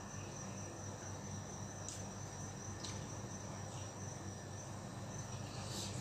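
A man eating by hand from a metal plate: a few faint clicks of chewing and fingers on the plate, over a steady low hum and a thin, steady high-pitched whine.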